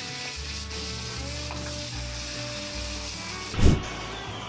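Water spraying onto pigs in a metal chute, a steady hiss. About three and a half seconds in, a single loud, low thump cuts it off.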